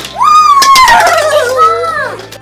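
A child's long, loud excited squeal that slides slowly down in pitch, followed near the end by a shorter second squeal, as the toy ball is popped open.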